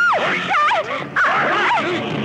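A woman's repeated high-pitched shrieks and cries, each rising and falling in pitch, as she struggles while being dragged.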